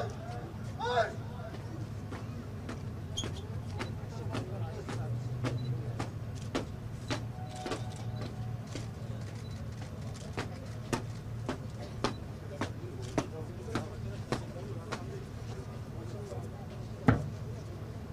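Outdoor ambience at a large standing crowd: a steady low rumble with scattered, irregular sharp clicks. Two short rising high calls come in the first second, and a single louder thump comes near the end.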